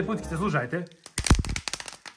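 A thin clear plastic bag of firecrackers packed in sawdust being crinkled and torn open by hand, with a quick run of sharp crinkling noises starting about a second in.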